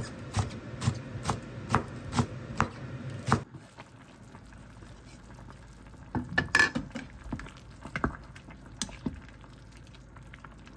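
Chef's knife chopping green onions on a plastic cutting board, about two chops a second, breaking off suddenly about three and a half seconds in. Then a quieter stretch over a pot of simmering beef and radish soup, with a short clatter and a few single knocks of a wooden spoon against the pot.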